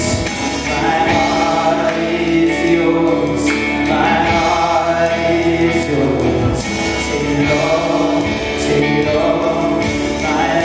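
A live gospel song: a man singing with acoustic guitar and keyboard accompaniment.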